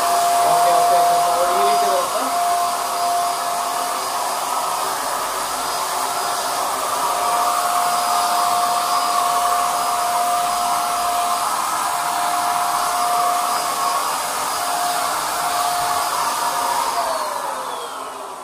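Buildskill Pro BPS2100 750 W HVLP electric paint sprayer running steadily while spraying paint: a high motor whine over a rush of air. Near the end it is switched off and the whine falls away.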